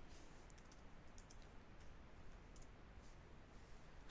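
Faint computer keyboard keystrokes: a scattered handful of light clicks as a short terminal command is typed and entered, over near silence.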